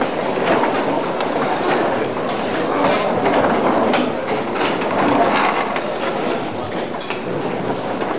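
Steady crowd din in a large hall: many people talking at once and moving about, with scattered clicks and knocks.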